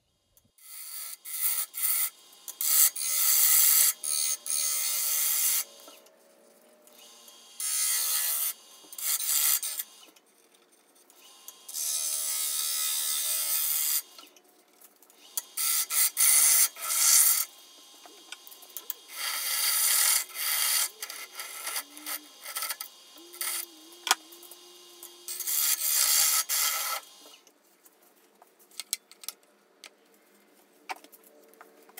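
A bowl gouge cutting the inside of a green spalted beech bowl spinning on a wood lathe, in about ten separate passes of one to three seconds each with short pauses between them.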